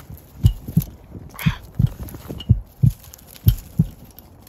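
A string of low, dull thumps, some in pairs at about two a second, with a brief rustle partway through. The sound comes from a handheld phone being knocked and handled as someone climbs a chain-link fence.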